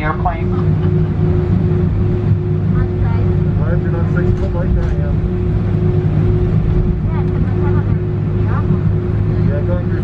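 Cabin noise of an Airbus A319 taxiing on its engines at idle: a steady low hum with a constant tone running through it, with faint passenger voices.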